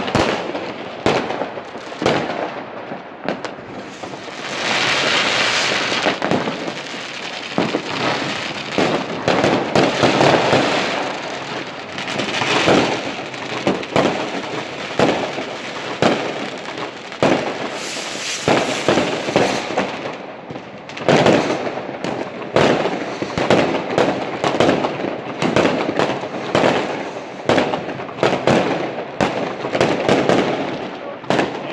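Fireworks going off without pause: a dense run of sharp bangs from bursting rockets and firecrackers, with stretches of crackling in between.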